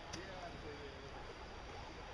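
Quiet outdoor background with faint, distant voices and no clear nearby sound.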